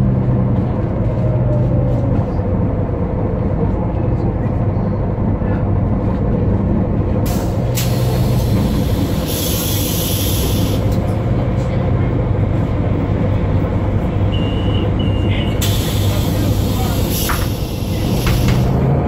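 Inside the cabin of a Solaris Urbino 12 III city bus: its DAF PR183 diesel engine runs steadily through a ZF six-speed automatic gearbox, which the uploader describes as wrecked. Two long pneumatic air hisses from the brakes or doors come partway through and again near the end, with a short double beep just before the second hiss.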